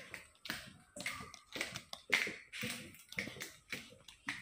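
Footsteps on a hard floor at a walking pace, about two sharp taps a second.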